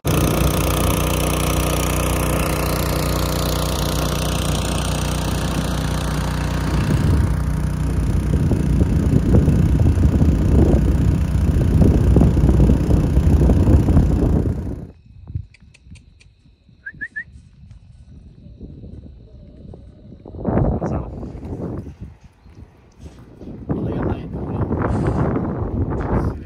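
A motor running steadily for about fifteen seconds, then cutting off suddenly. After that it is much quieter, with a few brief voices near the end.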